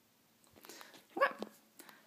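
Near silence, then from about half a second in faint handling noise (light knocks and rustle) as a handheld camera is moved, and a short spoken "okay" rising in pitch about a second in.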